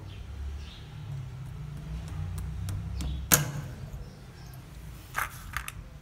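A lead airgun pellet is pushed through a hand pellet sizer with a metal punch. A low rumble of pressing and handling gives way to one sharp click about three seconds in, and a couple of lighter clicks come near the end.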